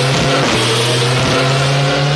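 A loud, steady rushing noise over a held bass note from a sound-system DJ's mix, breaking in suddenly just before and running on between reggae tunes. It sounds like a whoosh or engine-like effect laid over the record.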